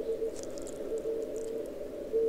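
Shortwave receiver audio on the 40-metre band through a narrow CW filter: a hiss of band noise with a weak Morse code tone, keyed briefly at the start and then fading down into the noise.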